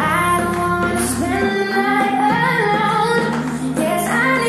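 A pop song: a woman singing a melody over instrumental backing.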